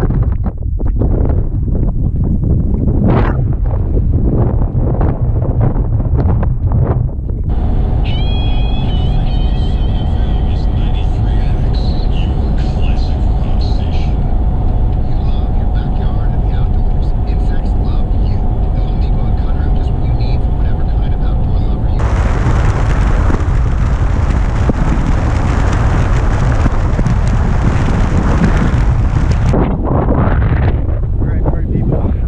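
Gusty wind on the microphone, then a vehicle driving on a highway with a steady drone. About two-thirds of the way through, a cut brings loud, even wind noise on the microphone.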